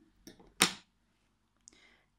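One sharp click a little over half a second in, from a pair of scissors being set down after cutting the yarn, with faint handling rustles just before it.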